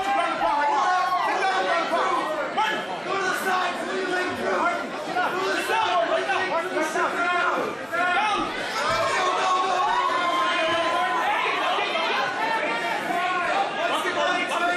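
A crowd of spectators shouting and talking over one another, many voices at once, steady throughout.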